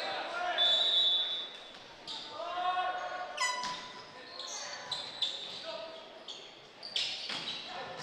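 Volleyball rally in an echoing gym: the ball struck hard a couple of times, about three and a half and seven seconds in, sneakers squeaking on the court, and players and spectators shouting.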